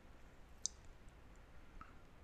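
Near silence: quiet room tone, with a single short, sharp click about two-thirds of a second in and a fainter tick near the end.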